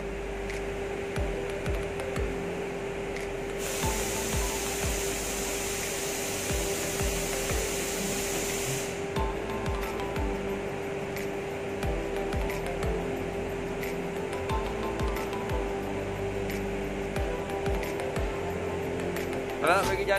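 Background music with a steady tone, over scattered clicks and knocks of hands working plastic ball valves on a water filter's PVC pipework. About four seconds in, a loud hiss starts and runs for roughly five seconds, then cuts off.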